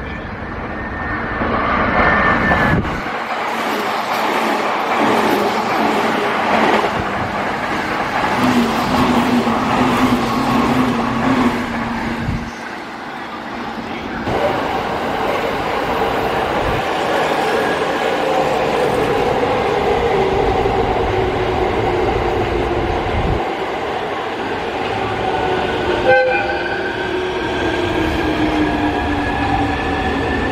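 Electric trains running through a station: an E259 Narita Express electric multiple unit comes in loud over the first few seconds, a steady tone is held for about three seconds some eight seconds in, and later a train's motor whine falls in pitch as it slows. Near the end a JR commuter electric multiple unit pulls away, its motor whine rising in pitch as it accelerates.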